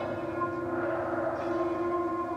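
Suspense film score of sustained, bell-like ringing tones over a low drone.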